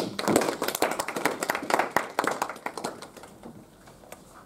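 A small group of people clapping in a small room, dying away after about three seconds.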